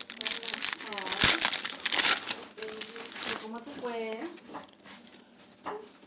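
Card pack packaging crinkling and crackling loudly as it is torn open by hand, easing after about three seconds into quieter rustling of the cards, with a few short murmured hums from a voice.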